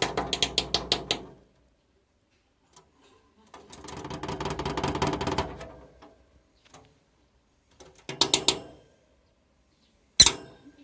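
A masked lovebird's feet pattering quickly over a plastic surface: three runs of rapid light taps, the longest midway.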